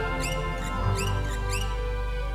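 Film soundtrack: held music under a run of short, high squeaks, each dipping and rising in pitch, about three a second.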